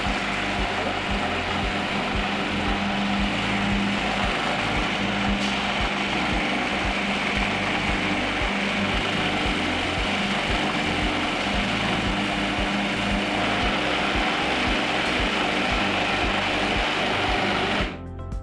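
Electric food processor motor running steadily, blending a ground-almond cheese mixture while liquid is poured in little by little through the feed tube; the motor cuts off just before the end.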